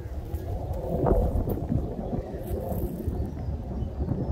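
Wind buffeting a handheld phone's microphone, an uneven low rumble, with handling noise and a louder bump about a second in as the phone is turned round.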